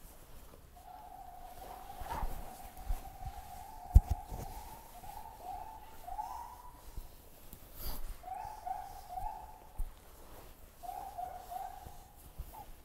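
Bodies thudding and shifting on a grappling mat as a scissor sweep is drilled, the loudest thud about four seconds in. Behind it runs a thin steady tone at one pitch that later breaks into short rising notes.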